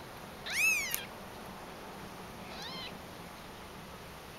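Very young Persian kitten mewing twice: a loud, high-pitched mew that rises and falls about half a second in, then a fainter, falling mew about two and a half seconds in.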